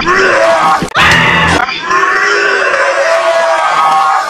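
A man's singing voice holding long, strained notes, with a quick sweep in pitch about a second in.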